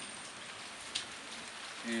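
Steady rain falling, an even hiss, with one faint click about a second in.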